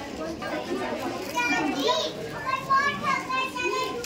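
Children's voices talking and calling out, with the voices growing louder from about a second in.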